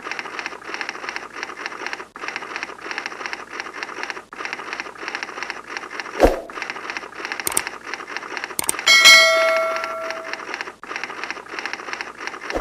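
Typewriter-style typing sound effect: rapid key clicking with short breaks. About six seconds in there is a thump, then a couple of sharp clicks, and about nine seconds in a notification bell chimes and rings out, fading.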